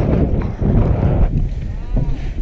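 Wind buffeting the microphone as a steady low rumble. Near the end there is a short wavering tone that rises and then falls.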